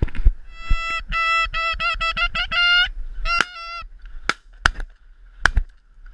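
Geese honking loudly in a fast run of repeated notes for about two seconds, then a shorter burst. This is followed by three sharp knocks near the end.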